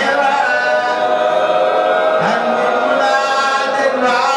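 A man chanting an unaccompanied Arabic mourning elegy (a Shia majlis lament) into a microphone, in long drawn-out melodic sung lines.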